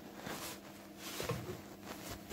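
Quiet room tone with a faint low steady hum.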